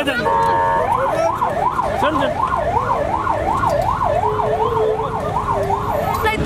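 An emergency vehicle's siren, starting on a brief steady note and then wailing rapidly up and down, about two and a half rises and falls a second, over street and crowd noise. A lower steady note sounds briefly past the middle.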